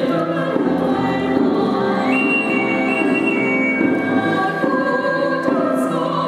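Live classical music: a soprano singing in operatic style, accompanied by piano and cello, with held notes throughout.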